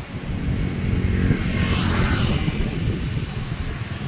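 Car driving along a road: a steady low rumble of engine, tyres and wind. About two seconds in, a brief hiss swells and fades.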